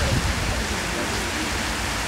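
Heavy rain pouring down in a steady hiss, driven by strong wind. A brief low rumble of wind or handling on the microphone comes just after the start.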